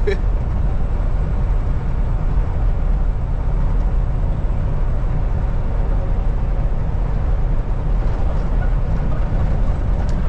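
Steady engine and road drone heard inside the cab of a Kenworth T680 semi truck cruising at highway speed, with a brief laugh at the very start.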